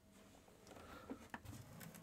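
Near silence: room tone with faint handling noises and one light click about a second and a third in, as hands move over the incubator's plastic case.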